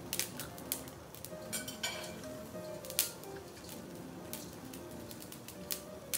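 Chopsticks and utensils clicking and clinking on plates and the tabletop grill, a dozen or so scattered clicks with a louder one about three seconds in, over quiet background music.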